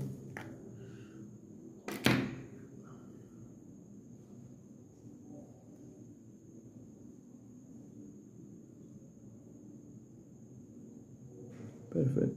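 A single sharp knock about two seconds in from handling a jar of yellow paint on the table. After it there is only a low steady hum with faint handling noise, and a small click near the end.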